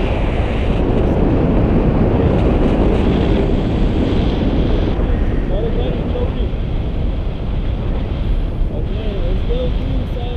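Wind rushing over an action camera's microphone on a selfie stick in tandem paraglider flight: a loud, steady buffeting rush of airflow.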